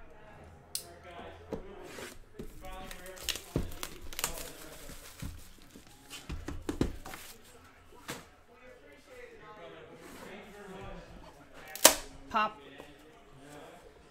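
Plastic shrink wrap being torn off a sealed trading-card box and crumpled, with the crackle of handling and a few knocks as the box is moved. A sharp knock near the end is the loudest sound.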